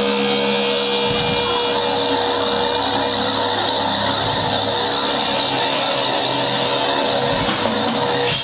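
Live rock band playing loud with electric guitars, the guitars ringing out long sustained notes, one steady high note held until near the end.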